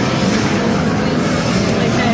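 Loud, steady arcade din: many game machines sounding at once, with the noise of a busy amusement arcade and no single sound standing out.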